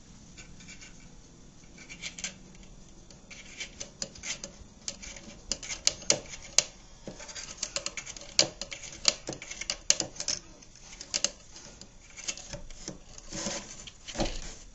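A kitten pawing and scratching at a wooden cabinet top and the wooden holder beside it: irregular clicks and scrapes of claws on wood. They start about two seconds in and come thickest in the middle.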